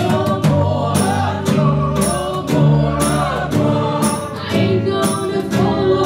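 A band playing live: drum kit, guitar and women's voices singing together in harmony, over a steady beat of drum and cymbal hits.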